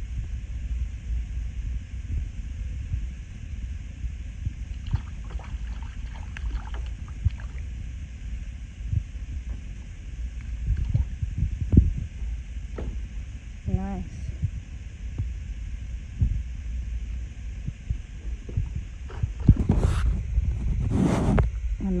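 Low rumble of wind on the microphone, with scattered knocks and water sounds from a kayak and paddle. A short voice-like sound comes about two-thirds of the way through, and voices pick up near the end.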